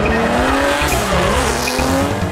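BMW E36 drift car sliding with its tyres squealing and its engine revving up and down at high rpm. The tyre squeal swells a little past the middle.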